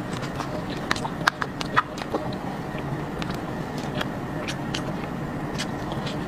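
Close-up eating sounds of a person eating a soft, creamy dessert from a plastic cup with a spoon: wet mouth smacks and chewing, heard as a scatter of sharp little clicks over a steady low background.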